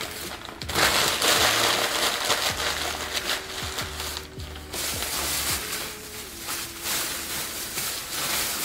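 Tissue paper and a plastic shopping bag crinkling and rustling as they are handled, densest in the first half, over soft background music.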